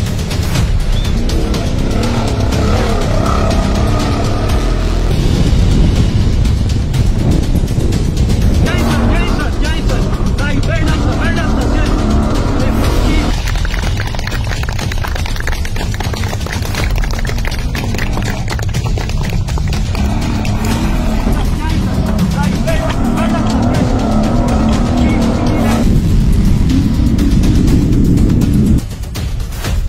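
Off-road rally cars' engines running hard at speed, mixed under a music soundtrack with a voice.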